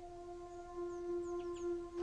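A flute holding one long steady note, with a few faint, short, high bird chirps above it.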